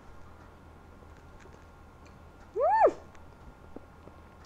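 A woman's short, closed-mouth 'mm' of enjoyment while eating, its pitch rising and then falling, about two-thirds of the way in. Otherwise quiet room tone.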